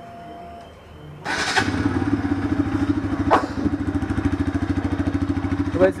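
Bajaj Pulsar RS200's single-cylinder, fuel-injected 200 cc engine started on the electric starter about a second in. It catches at once and settles into a steady, evenly pulsing idle with a sporty note, with one sharp tick a little past three seconds.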